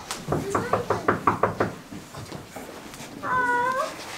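A quick run of short, high vocal sounds, about eight in under two seconds, then a drawn-out "A-a" from a girl's voice near the end.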